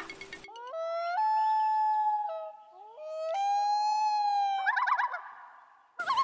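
A long howl that rises into a held note, dips and climbs again to another held note, then breaks into a quick wavering stretch near the end.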